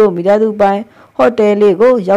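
Only speech: a single voice narrating, with a brief pause about a second in.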